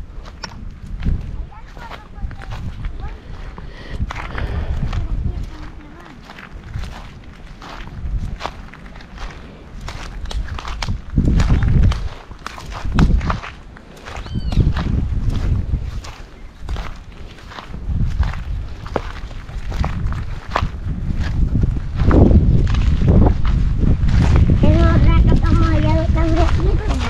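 Footsteps crunching over dry, stony ground while walking, with repeated gusts of wind buffeting the microphone. A voice is heard briefly near the end.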